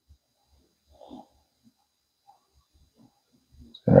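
Mostly quiet, with faint low thumps from a hand-held smartphone being handled and its touchscreen tapped, and a brief faint murmur about a second in.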